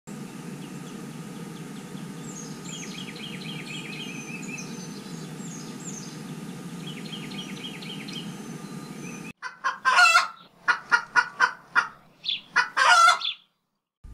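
Chickens calling loudly in a quick run of short, sharp clucks and squawks, starting suddenly about nine seconds in. Before that, a steady low rush with faint small-bird chirps.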